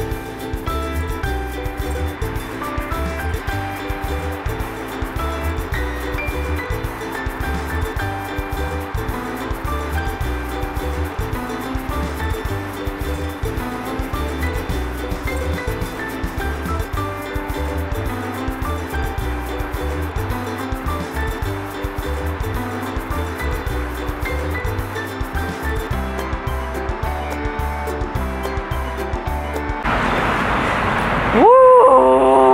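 Background music track with a steady beat and a repeating pattern of chords over a pulsing bass.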